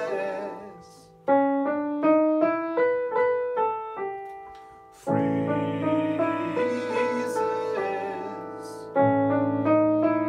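Nord Stage 3 stage keyboard on a piano sound, playing a jazzy, chromatic melody line over chords. A chord is struck about a second in and is followed by a run of short notes. Further chords come at about five seconds and near the end, each ringing out and fading.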